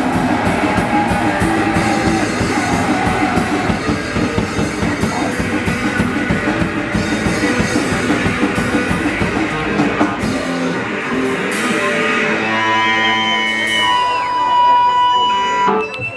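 Punk hardcore band playing live with distorted guitar, bass and drum kit. About ten seconds in, the bass and drums drop out as the song ends, leaving guitar ringing with steady feedback tones and a few cymbal crashes, until the sound cuts off at the end.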